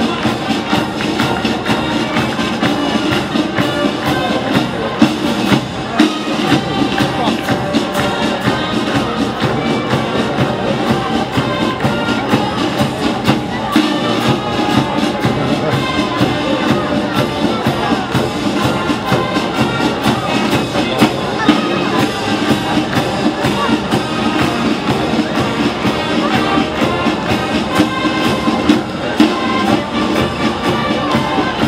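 A marching brass band playing in the street, with brass and drums keeping a steady beat.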